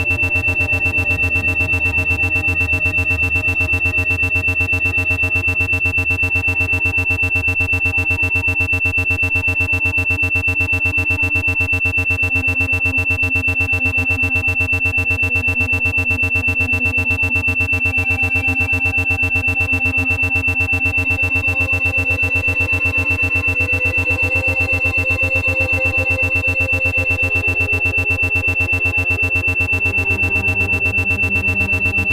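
Brainwave-entrainment audio: an 8 Hz isochronic tone, a loud steady high-pitched tone pulsing rapidly on and off, layered over slow, sustained ambient synthesizer pads.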